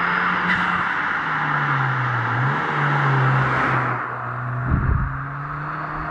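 A Ford Fiesta ST hot hatch driving past on a country road. The engine note holds steady, dips about two seconds in, then comes back up, over tyre and road noise that fades as the car goes by. A brief low rumble comes near the end.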